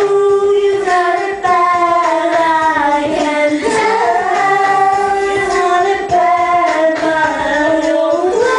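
A man and a woman singing karaoke together into handheld microphones, with long held notes that step and slide between pitches.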